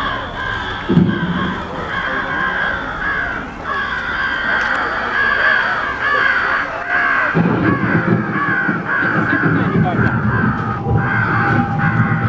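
Crow cawing, repeated over and over, with people's voices underneath. From about seven seconds in, a deeper, louder layer of sound joins.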